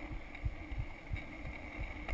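Skateboard wheels rolling over cracked asphalt: a steady low rumble broken by irregular thumps as the wheels cross the cracks.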